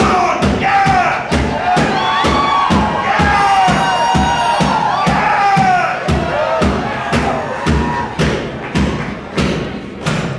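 Live rock drum kit pounded in a steady beat of hard hits, about two and a half a second, with voices shouting and wailing over it in long gliding cries that die away near the end.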